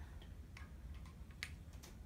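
Faint low room hum with a few light sharp clicks, two of them close together about a second and a half in.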